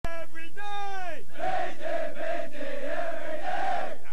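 One man's drawn-out shouted call that drops in pitch at its end, then a platoon of Marine recruits shouting back together in unison for about two and a half seconds.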